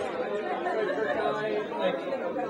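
Crowd chatter: many people talking at once in a large room.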